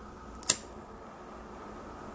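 A single sharp click about half a second in: the flint wheel of a disposable lighter being struck to light it, the lighter's flame adjuster turned fully open.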